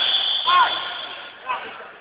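A man's short shout of "Ay!" over background chatter in a large hall. The noise fades toward the end.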